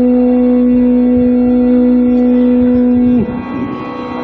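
Carnatic concert music in raga Saranga: one long, dead-steady held note that ends with a short downward slide about three seconds in. Quieter accompaniment with a steady drone carries on after it.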